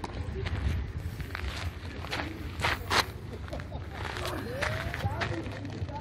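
Outdoor background: distant voices and footsteps over a low rumble, with a few sharp clicks or knocks near the middle. The clamped-on cordless drill is not running.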